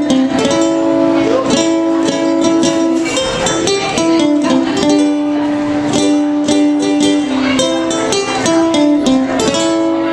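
Solo ukulele played with a steady rhythm of strummed chords and held picked notes, a blues tune.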